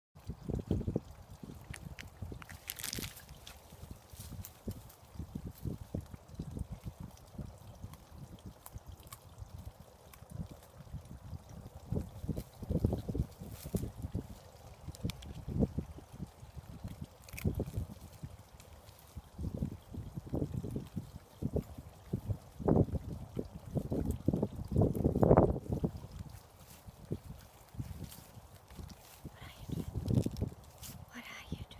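Handheld outdoor recording: uneven rustling, bumping and wind-buffeting noise on the microphone as it moves through grass and hedgerow, swelling in stronger bursts over the last several seconds.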